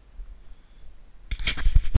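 A faint low rumble, then from about one and a half seconds in a loud burst of scraping, crackling and bumps from fingers handling the camera right over its microphone.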